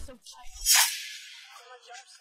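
A short whoosh-like editing sound effect about half a second in, fading away, followed by faint scattered musical tones.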